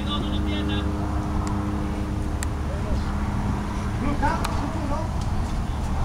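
Outdoor ambience at a ballfield: a steady low rumble with a faint hum, distant voices, and a few sharp clicks.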